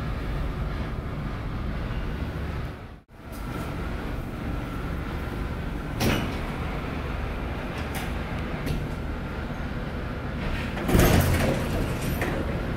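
Steady low rumble of lobby and machinery noise, with a sharp click partway through. Near the end the landing doors of a 1973 Otis traction elevator slide open with a loud rush.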